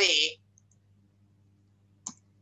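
A brief spoken syllable right at the start, then quiet with only a low, steady electrical hum. A faint click sounds just as the voice begins.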